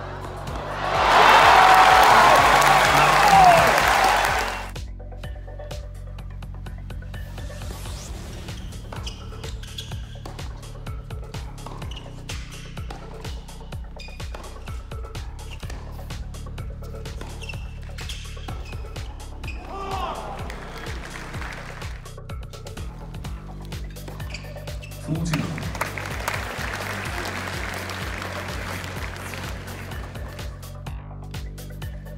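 Background music under the live sound of a professional tennis match: the crowd applauds and cheers loudly for about three seconds starting a second in, and again, less loudly, near the end, with the sharp pops of racket strikes on the ball in between.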